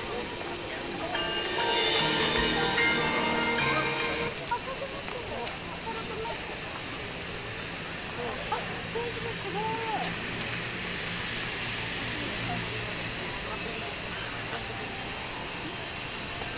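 A steady, high-pitched hiss at an even level. Faint music lies under it and stops about four seconds in, and faint voices are heard afterwards.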